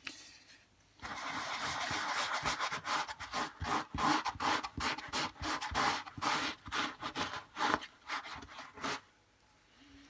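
A cloth rubbing in quick, repeated strokes over the paper cone of an RCF 15-inch bass speaker driver. It starts about a second in and stops about a second before the end.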